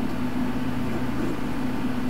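Steady low electrical hum with a background hiss from powered radio test-bench equipment, a repeater and its service monitor, running without change.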